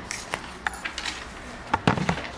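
Handling noise: a string of small clicks and knocks as things are moved close to the microphone, with a louder cluster near the end.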